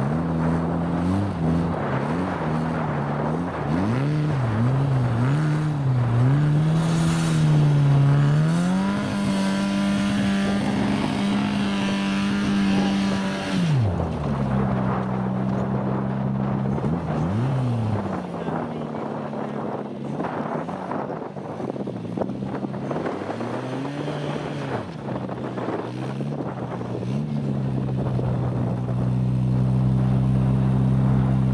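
Trials car engine revving up and down under load as the car claws up a muddy grass slope, then held at high revs for about five seconds with the wheels spinning. Near the middle the revs drop suddenly, and the engine runs on at a lower steady speed with a couple of brief blips.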